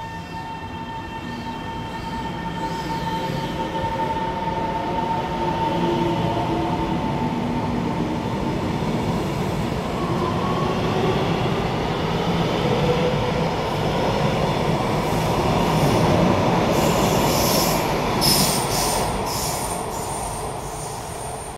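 TRA EMU700-series electric commuter train pulling away from the platform, its traction motors whining in a rising pitch as it gathers speed, growing louder as the cars run past. Sharp high clicks and wheel-on-rail noise in the last few seconds as it passes.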